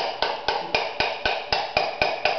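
A piston with new rings being tapped down through a ring compressor into its cylinder with a piece of wood: a steady run of light knocks, about four a second.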